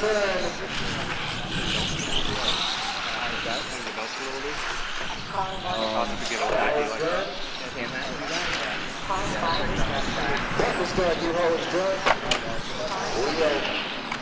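Electric 1/10-scale RC touring cars lapping the track, their motors whining up and down in pitch as they accelerate and brake, with a single sharp click about twelve seconds in.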